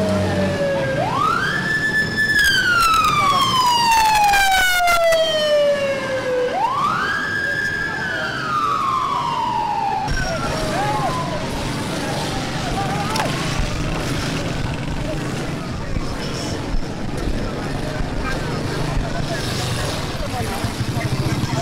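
A siren wailing over street noise: twice it climbs quickly to a high pitch, holds for a moment, then slides slowly down over several seconds. A fainter, more distant wail follows about halfway through.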